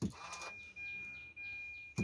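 A click as the Hyundai Grand i10's push-button start is pressed, then a steady high-pitched electronic tone from the car as the ignition comes on, with faint quick chirps above it.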